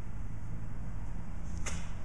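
A double-edged 1095 high-carbon steel fixed blade (Mineral Mountain Hatchet Works Stickit 2) slicing through a cloth kung-fu sash, with one short cutting sound near the end over a steady low hum.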